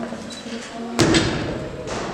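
A single heavy thud on the floor about a second in, with a short echo in the large hall, among people's voices.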